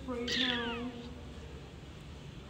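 A cat meows once, a short call falling in pitch about a quarter of a second in, over a person's low drawn-out voice that fades out soon after.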